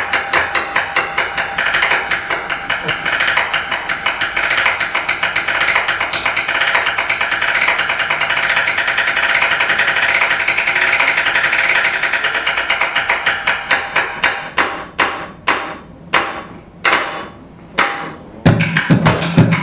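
Bucket drumming: wooden drumsticks play a fast, dense run of strokes on upturned plastic buckets and their lids. In the last few seconds the playing thins to a few separate, spaced hits.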